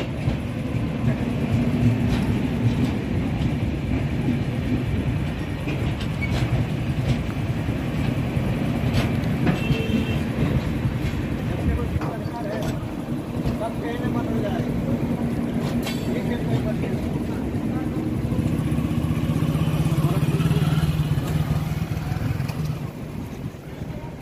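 Passenger train's LHB coaches rolling slowly past on arrival: a steady low rumble with occasional sharp wheel clacks over rail joints. After the last coach passes about halfway through, the rumble carries on as the train moves away, swelling for a few seconds near the end.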